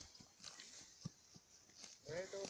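Near silence broken by a few faint, irregular crunches of a horse tearing and chewing grass, the clearest about a second in.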